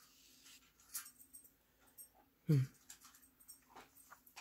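Soft handling of heavy paper journal pages, with a few faint clicks and rustles, and a short falling "hmm" from a woman about two and a half seconds in.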